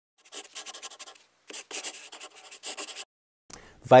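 Rapid dry scratching strokes in three short runs, the last stopping about three seconds in.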